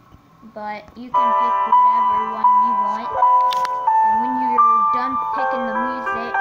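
Slideshow background music: a chiming electronic melody of held notes that starts about a second in.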